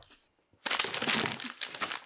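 Rustling and crinkling of a canvas tote bag and its contents as it is lifted and handled, starting about half a second in and running for over a second.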